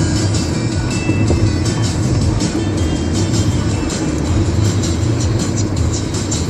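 Music playing on the car stereo inside a moving car's cabin, over the steady low rumble of engine and road noise.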